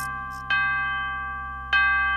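Grandfather-clock chime striking the hour, a bell tone struck about every 1.2 seconds, each ringing out and fading. Two strikes fall here, one about half a second in and one near the end, as the clock strikes three.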